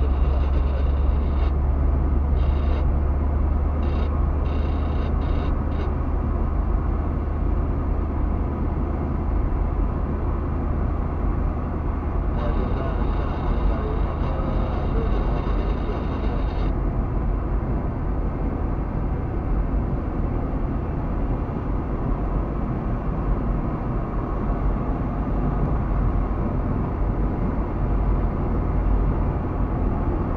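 Inside a moving car: the steady low rumble of engine and tyre noise while driving along a road, heard from the cabin.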